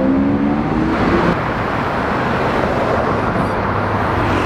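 Lamborghini Aventador's V12 engine accelerating away, its pitch rising for about a second, then cut off abruptly. Steady road traffic noise follows.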